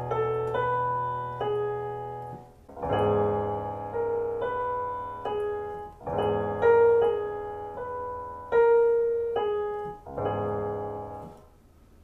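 Piano playing short phrases over held chords, the same note recurring against a changing harmony. A fresh chord is struck four times after the first, each fading before the next, and the last dies away shortly before the end.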